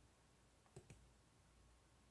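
Near silence: room tone with two faint, short clicks close together a little under a second in.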